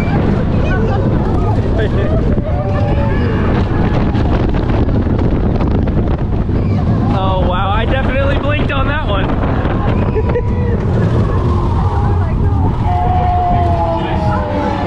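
Ride on the Slinky Dog Dash roller coaster: wind buffeting the microphone over the rumble of the moving train, with riders' voices calling out, most densely about halfway through.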